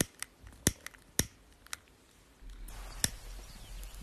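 A handful of sharp, separate clicks at uneven intervals, with a low rumble coming in about two and a half seconds in.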